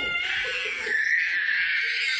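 A toddler crying: one long, high, wavering wail.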